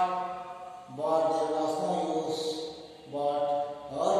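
A man's voice speaking in three drawn-out, sing-song phrases with short pauses between them.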